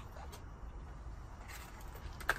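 Quiet background: a steady low hum with faint handling noise and a few soft clicks as the camera is moved around.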